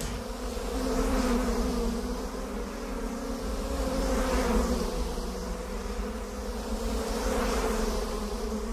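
Steady, insect-like buzzing drone, a hornet-buzz sound effect, swelling and easing a few times.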